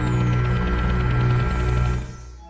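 Deep low electronic drone of a title-sequence sound effect, steady with a hissing shimmer above it, dying away at the end.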